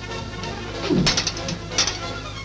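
Background music with sharp metallic clashes of steel sword blades over it: a quick run of clashes about a second in and one more near the end.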